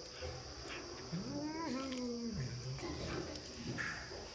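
A cat gives one drawn-out call of just over a second, rising in pitch, holding, then sliding down, over faint clicks of a tabby kitten chewing its food.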